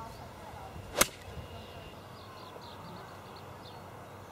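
A golf iron striking the ball on a full swing: one sharp crack about a second in.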